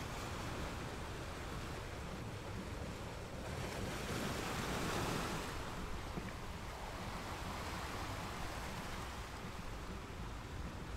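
Sea surf washing onto the beach: a steady rush of waves that swells once about four to five seconds in, with some wind on the microphone.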